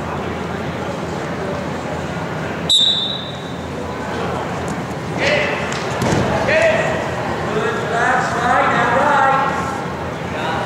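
A referee's whistle gives one short, shrill blast about three seconds in, starting the wrestlers from the top-and-bottom referee's position. From about five seconds on, voices shout and call in a large, echoing gym.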